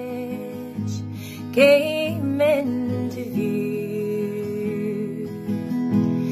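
Woman singing a slow ballad while playing an acoustic guitar. A louder held note with vibrato comes about a second and a half in, over ringing guitar chords.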